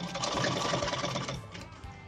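Sewing machine running fast, stitching a waistband strip onto layered pant fabric, then stopping about one and a half seconds in.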